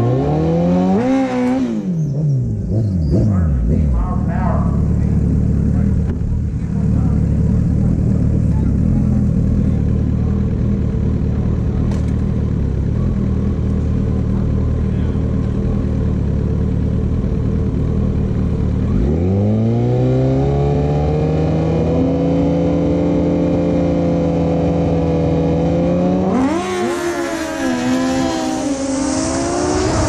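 Kawasaki ZX-14R inline-four sport bike engine at a drag strip start line. It is blipped, then settles into a steady idle rumble. About two-thirds in it is revved up and held at high rpm for the launch, and near the end the bike launches with a sharp rise in revs and a rush of wind noise.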